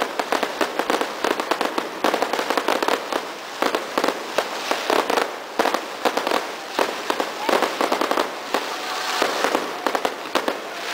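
Fireworks display: aerial shells bursting in rapid succession, a dense, continuous run of bangs and crackles with louder clusters every second or so.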